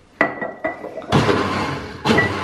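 Countertop blender: a sharp click with a short high tone, then about a second in the motor starts and runs loudly, blending frozen sorbet with vodka and champagne.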